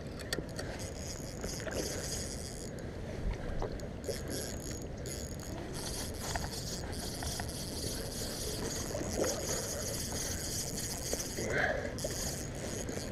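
Spinning reel being cranked steadily to retrieve line: a soft mechanical whir with scattered faint clicks, under a steady rush of river and wind noise.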